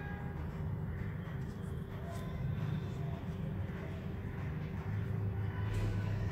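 A steady low background rumble and hum with a few faint soft ticks.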